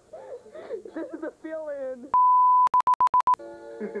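A loud, steady electronic beep sounds about halfway through, then breaks into a rapid run of stuttering beeps with clicks for about half a second. Voices come before it, and a held chord of steady tones and a laugh follow it.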